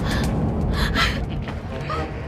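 A woman gasping in surprise: two breathy gasps or exclamations, the second about a second in, with soft background music underneath.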